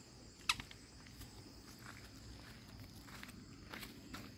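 Faint crackling of dry twigs and leaves on bare dirt, with one sharp snap about half a second in and a few fainter ticks after.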